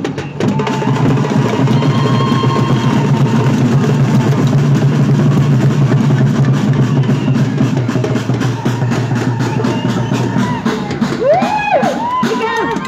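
Drums beating a fast, steady rhythm, with voices rising over them near the end.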